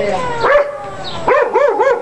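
Dog barking: one bark about half a second in, then a quick run of four barks near the end.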